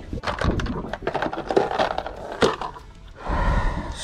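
Lead sinkers and fishing tackle being rummaged for and handled: a quick run of knocks and clicks for the first two and a half seconds, then a short rustling rush of noise near the end.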